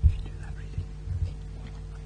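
Faint whispering and a few soft low thumps close to the lectern microphone, over a steady electrical hum.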